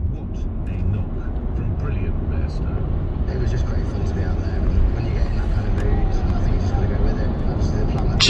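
Car driving at motorway speed, heard from inside the cabin: a steady low rumble of road and engine noise.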